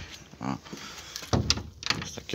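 Wooden interior door being handled: a few sharp clicks and knocks in the second half, like its latch and the door moving in its frame.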